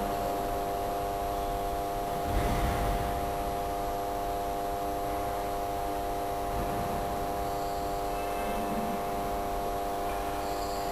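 A steady hum made of several held tones, unchanging in pitch and level, with a brief soft knock or rustle about two and a half seconds in.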